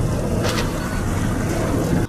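A boat's engine running steadily under a broad rush of noise, with a faint click about half a second in.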